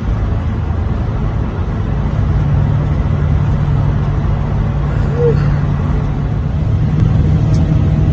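An old pickup truck driving at highway speed, heard from inside the cab: steady engine drone and road noise, with a low hum that settles in about two seconds in.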